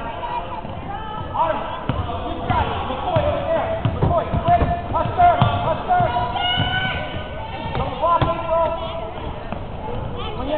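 A basketball bouncing on a hardwood gym floor during play, with voices shouting over it.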